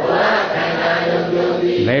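Many voices chanting a line of a Burmese loving-kindness (metta) recitation in unison, a congregation answering the monk's lead; the pitch is held steady across the line.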